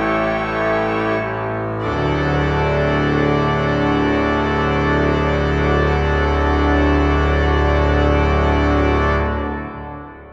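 Hauptwerk virtual pipe organ (Scots' Church Riga sample set, with added convolution reverb) playing a loud sustained chord that moves about two seconds in to a full closing chord over a deep pedal bass. The chord is held and then released near the end, leaving the reverb to die away.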